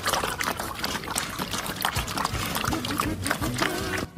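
Several puppies eating together from one bowl: a dense, continuous run of lapping, smacking and chewing clicks, with music underneath.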